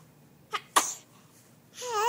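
Infant's voice: two short, sudden breathy bursts, the second louder, about half a second and just under a second in. Near the end she starts a long pitched coo.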